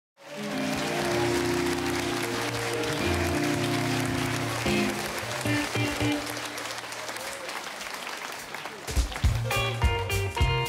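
Studio audience applauding and cheering over sustained chords from the band. About nine seconds in the applause has died down and the drums and electric guitar kick in with short, rhythmic hits as the song starts.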